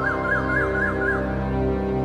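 Background music of sustained held chords, with a quick repeated chirping figure at about four a second that stops a little over a second in.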